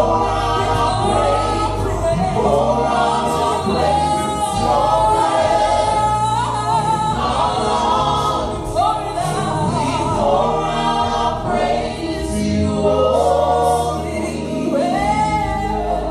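A worship team of male and female voices singing a gospel worship song together, the lines 'so we pour out our praise' and 'in our lungs', over low sustained instrumental backing.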